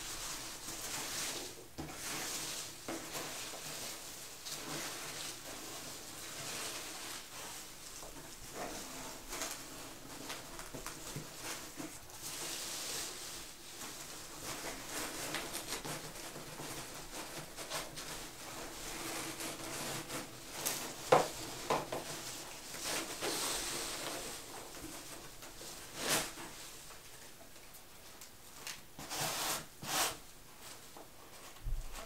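Hands rummaging through loose packing peanuts and shredded paper fill in a cardboard box: continuous rustling, with a few louder knocks and scrapes of cardboard in the last third.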